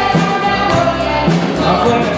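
Live praise band playing a Spanish-language worship song: voices singing together over acoustic guitar and electric bass, with a steady beat.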